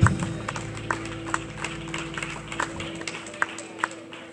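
A rock band's last hit, heard through the PA, rings out and fades through the hall, leaving a steady amplifier tone, while a few people clap sparsely and irregularly.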